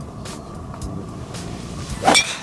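Low, uneven rumble of wind buffeting the microphone on an open golf tee, with a few faint ticks.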